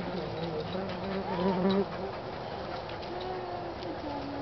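A flying insect buzzing close by, growing louder about a second and a half in, then cutting off suddenly just before two seconds.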